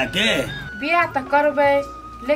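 Dialogue: a man's voice and then a higher woman's voice talking, over background music with a steady held note.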